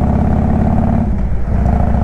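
Harley-Davidson Road King Classic's V-twin engine running at cruising speed, a steady low pulsing note that shifts briefly about halfway through.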